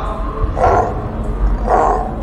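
Two short, rough growls about a second apart, over a deep steady rumble.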